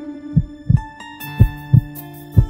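Heartbeat sound effect: a low double thump about once a second, over a held low tone. About halfway in, music joins with chiming notes and a bass line.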